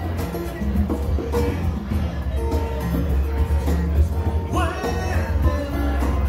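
Live acoustic music: an acoustic-electric guitar strummed over a steady pattern of hand-played congas.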